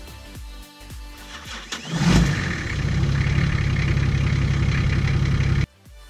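Nissan GQ Patrol's TD42 straight-six diesel engine starting about two seconds in, catching with a brief rev, then running steadily until the sound cuts off abruptly near the end.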